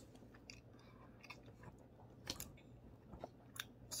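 A man chewing a small bite of cheese: faint, soft mouth sounds with scattered small clicks, a slightly louder one about two seconds in.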